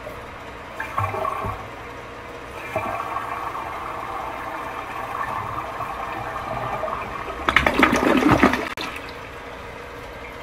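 Toilet being flushed: a steady hiss of water running in from the rim begins a few seconds in, swells into a louder rush of water about 7.5 s in, then settles back to quieter running water as the bowl swirls.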